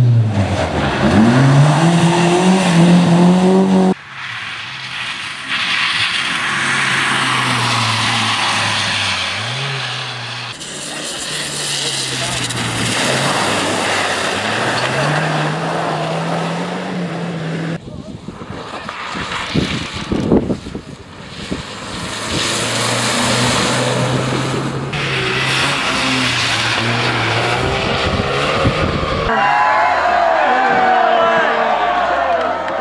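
Rally cars driving hard past the camera one after another, engines revving up and dropping back between gear changes, with tyre and road noise; the sound changes abruptly several times as one car gives way to the next.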